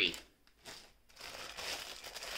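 Clear plastic wax-melt packaging crinkling as it is handled, starting about a second in and going on steadily.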